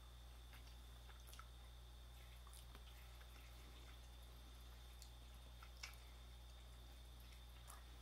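Near silence: faint, scattered mouth clicks and smacks of people chewing Nestlé Munchies, chocolate cubes with a caramel and biscuit centre, over a steady low hum.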